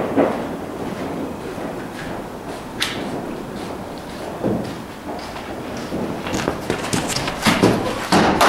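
Scattered knocks and thuds in an indoor cricket net hall: footsteps and balls knocking about. Near the end comes a denser run of louder thuds as a ball is bowled to the batter.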